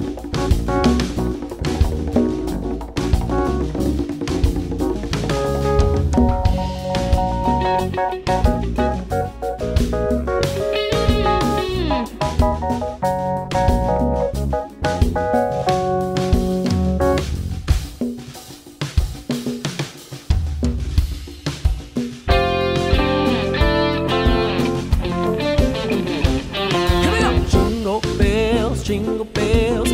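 A live band playing an instrumental passage with no singing: drum kit, bass, electric guitar, keyboard and hand-played conga drums. The band thins out and drops in level about two thirds of the way through, then comes back in full a few seconds later.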